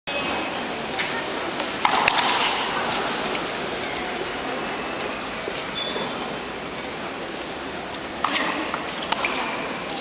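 Chatter of a large crowd of tennis spectators, with sharp pops of a tennis ball struck by racquets during play: a cluster about two seconds in and another near the end.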